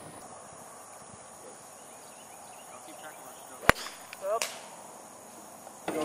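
Quiet outdoor background with a faint, steady high insect hum, broken just past the middle by one sharp click and, soon after, a brief voice-like sound.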